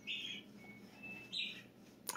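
Two short, faint sniffs through the nose, about a second and a half apart, taken at a small jar of scented wax held up to the face.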